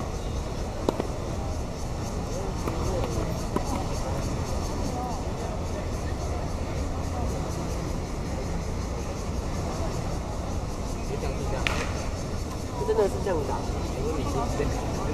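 Tennis balls struck by rackets: a sharp pop about a second in and again near the end, over a steady outdoor hum. Voices chatter in the background and grow louder near the end.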